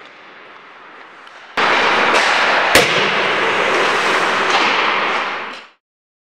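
Hockey stick tape being pulled off the roll onto a stick blade: a loud crackling rip that starts suddenly about a second and a half in and runs for about four seconds, with one sharp snap partway through, then fades out.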